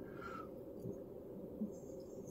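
Faint, steady, low background noise (room tone) with no distinct event.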